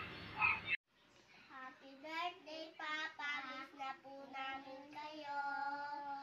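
A young child singing softly: a single high voice carrying a tune, with longer held notes toward the end.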